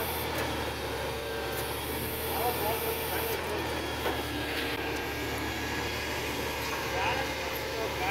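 Truck engine running steadily to drive its mounted hydraulic crane while the boom lifts and swings a clamped stack of concrete blocks.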